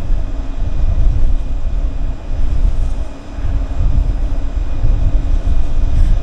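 Gusty wind rumbling on the microphone, rising and falling with a brief lull about three seconds in, while the running Vensys 100 wind turbine overhead adds a faint steady hum.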